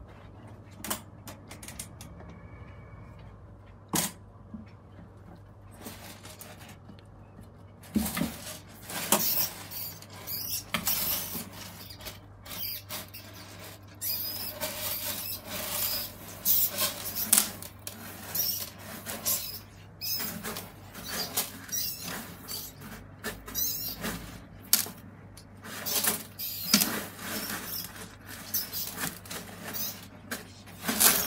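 Savannah monitor feeding on a rat in a gravel-floored glass tank: a few isolated clicks, then from about eight seconds in a dense, irregular run of clicks, crunches and scrapes as the lizard bites and shakes its prey. A steady low hum runs underneath.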